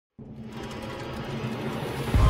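Opening swell of a channel-logo intro music sting, building steadily in loudness after a brief silence at the start.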